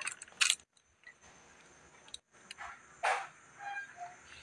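Faint scratching of a ballpoint pen writing numbers on notebook paper, in a few short strokes with pauses between them, the loudest about three seconds in.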